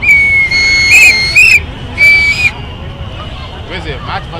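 Hand-held whistles blown in two blasts: a long, loud one of about a second and a half that warbles near its end, then a short one about two seconds in. Crowd chatter underneath.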